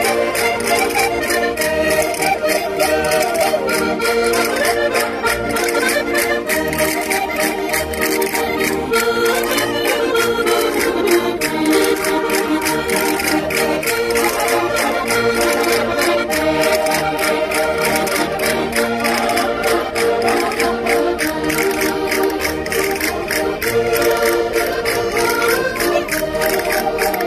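Several Minho concertinas (diatonic button accordions) playing a lively folk dance tune together, with castanets clicking a steady beat.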